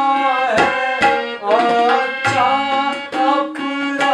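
Harmonium and tabla accompanying a man singing a devotional song in a Kumauni Ramleela style. Sustained reedy harmonium chords run under a wavering vocal line, with crisp tabla strokes and a few deep bayan booms.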